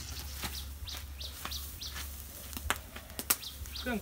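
Small birds chirping in repeated short, high, falling calls, with a few sharp cracks and pops from a burning straw pile; the loudest crack comes about three seconds in.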